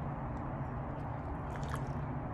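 A person sipping coffee from a plastic cup: a few faint mouth clicks about one and a half seconds in, over a steady low background rumble.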